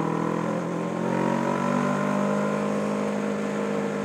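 Kawasaki Ninja motorcycle engine running steadily at cruising speed while riding, its pitch rising slightly about a second in and then easing gently.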